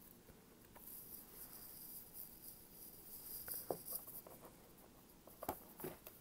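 Faint handling noise: soft rustling with a few small clicks and taps as a clear plastic box of fabric scraps and a paper card are handled.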